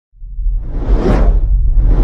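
Cinematic whoosh sound effects over a deep, steady low rumble. The audio starts from silence, and a whoosh swells to a peak about a second in, with another building near the end.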